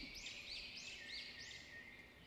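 A bird chirping faintly, a quick rising-and-falling chirp repeated about three times a second, growing fainter near the end.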